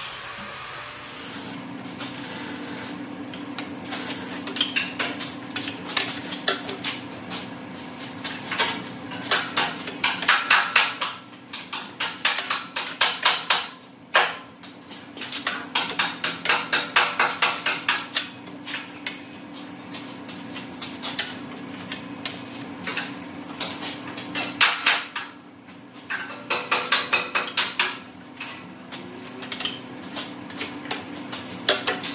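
Manual ratcheting tube bender bending a 1¾-inch tube: bursts of rapid metallic clicking, about ten a second, as the handle is worked and the ratchet steps the die round, over a steady low hum.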